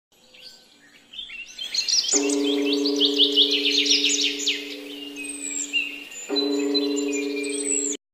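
Birds chirping with quick rising calls, busiest in the first half, over a steady held low chord that starts about two seconds in and breaks briefly near six seconds. Both cut off suddenly at the end.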